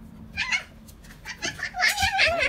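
High-pitched cries from a young child: a short one about half a second in and a louder, wavering one near the end, with a few light knocks between.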